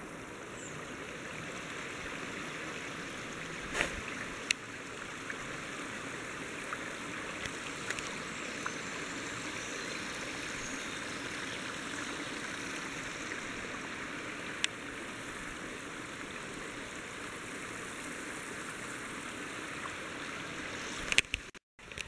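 Shallow stream running steadily over stones. A few brief clicks sound over it.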